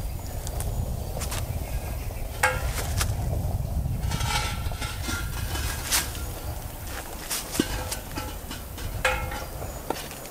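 Scattered knocks and scrapes as an outdoor drinking-fountain pedestal is handled and set back upright, over a steady low rumble.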